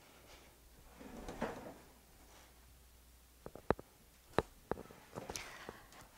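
Faint handling sounds: a soft rustle about a second in, then a scattering of light, sharp clicks and taps in the second half.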